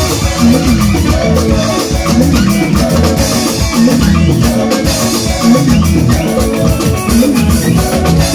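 Loud live highlife band music through a PA system, with a drum kit keeping a steady beat under repeating melodic lines.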